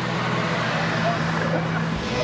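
A vehicle running: a steady low engine hum under road noise, the hum stopping shortly before the end.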